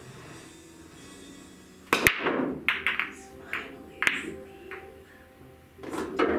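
Pool break shot on a 15-ball rack: about two seconds in comes a sharp double crack as the cue tip strikes the cue ball and the cue ball smashes into the racked balls. Then over the next couple of seconds a scatter of smaller clicks and knocks follows as the balls hit each other and the cushions.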